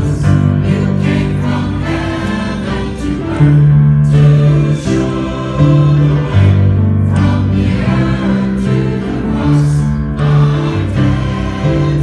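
Mixed church choir of men and women singing in parts, holding chords that change every second or so.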